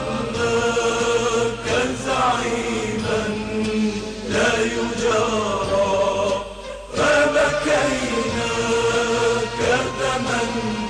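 Religious vocal chanting: a voice holding long, bending notes in phrases about two and a half seconds long, with short breaks between them.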